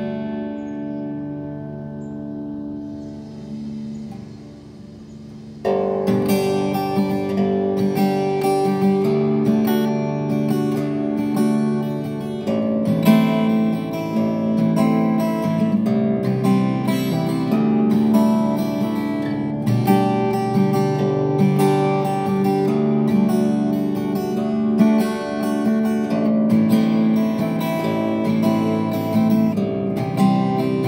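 Acoustic harp guitar playing open-position "cowboy" chords. A chord rings out and fades for the first five seconds or so, then steady strumming resumes and carries on through the rest.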